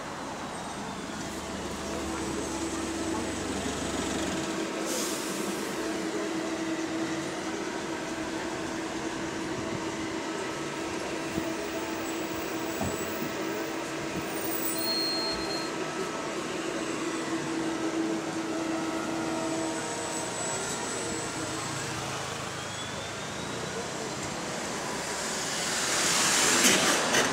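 Red double-decker diesel bus drawing up at a stop, its engine idling with a steady hum while it stands, then pulling away with a whine that rises near the end, amid passing road traffic.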